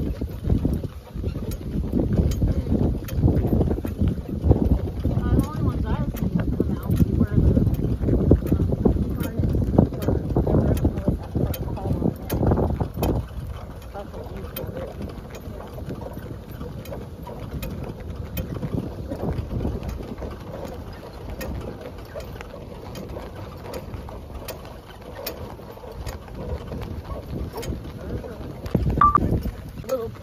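Wind buffeting the microphone over the running noise of a horse-drawn cart moving across grass, with light ticks and rattles throughout. The buffeting is heavy for about the first thirteen seconds, then eases.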